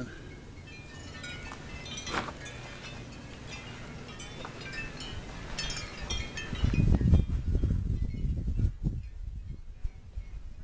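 Wind chimes tinkling in scattered, irregular strikes. In the second half, gusts of wind rumble on the microphone.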